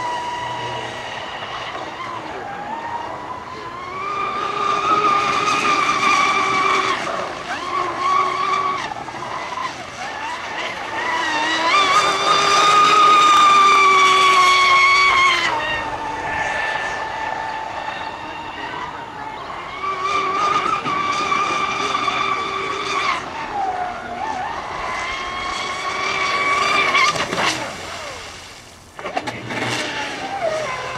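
High-pitched whine of a radio-control racing catamaran's Castle 2028 brushless electric motor at speed. The pitch and loudness rise and fall over several long passes as the throttle changes, loudest about halfway through, with a brief drop just before the end.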